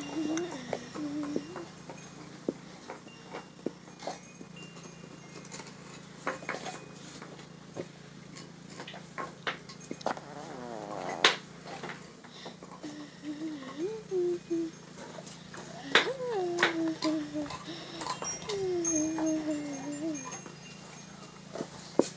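A dog gnawing a large bone on a concrete floor: scattered sharp clicks and cracks of teeth on bone, the loudest about eleven seconds in. Short wordless vocal sounds come and go over the chewing.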